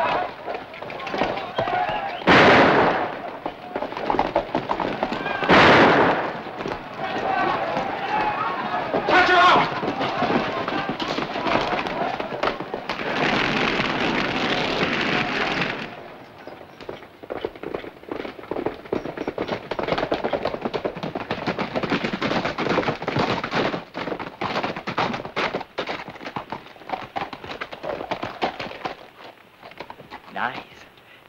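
Western film soundtrack: loud gunshots every few seconds amid wordless shouting from the riders. Near the middle comes a few seconds of steady rushing noise as hay catches fire, then a long stretch of fast, dense clatter of galloping horse hooves.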